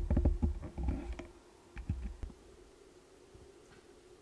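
Handling noise at a workbench: low rumbling bumps and a few light clicks that die away after about a second and a half, leaving quiet room tone with one or two more faint clicks.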